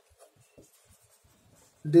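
A near-quiet pause in a small room with a few faint small sounds. A man's voice begins near the end.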